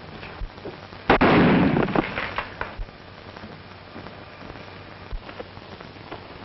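A single loud bang about a second in, trailing off in a short crackling rattle, followed by a few faint clicks.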